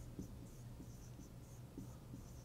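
Felt-tip marker writing on a board: faint, short scratchy strokes, several a second, as letters are drawn.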